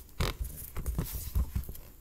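Camera handling noise: about six soft, irregular knocks and thumps as the recording device is jostled and moved about close to the microphone.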